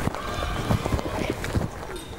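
Children's footsteps and scuffling on a paved schoolyard: irregular quick taps and knocks, with faint voices under them.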